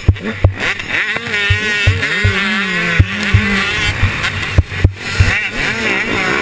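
On-board sound of a 125cc two-stroke KTM motocross bike riding hard, its engine pitch rising and falling with the throttle. Repeated short low thumps and a few sharp knocks cut through, the bike jolting over ruts.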